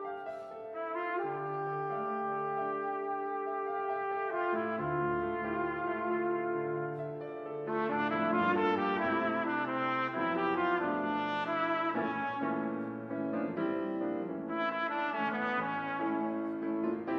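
Trumpet and piano playing a bossa nova: long held trumpet notes over piano chords, the playing growing louder and busier about eight seconds in.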